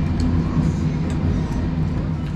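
A steady low background hum, with a few faint light clicks as chopsticks and a spoon stir noodles in a bowl.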